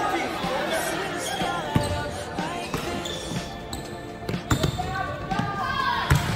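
Basketball dribbled on a hardwood gym floor: several bounces, most of them in the second half, with voices from the crowd and players around them.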